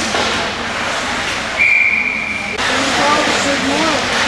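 A hockey referee's whistle: one steady, shrill blast about a second long in the middle, over rink chatter and crowd voices.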